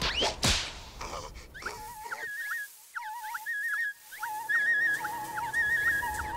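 Cartoon sound effects: a rush of blowing air with sharp hits in the first second. Then, from about a second and a half in, a whimsical music cue of trilling, whistle-like notes with short sliding notes between them.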